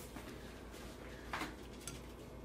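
Quiet kitchen room tone with a low steady hum, one faint brief noise about a second and a half in, and a tiny click near the end.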